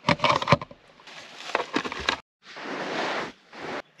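A tin of tuna being opened: a run of sharp clicks and cracks in the first two seconds, then, after an abrupt break, about a second of steady hiss.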